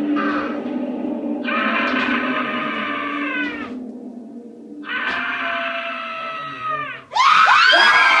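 Screaming over a low, steady droning soundtrack: two long screams of about two seconds each, each trailing down in pitch at its end, then a louder, wavering cry near the end.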